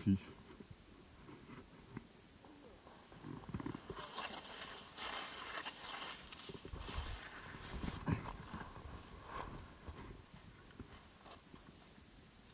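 Skis sliding and scraping over snow in uneven patches, strongest from about four seconds in to about nine seconds.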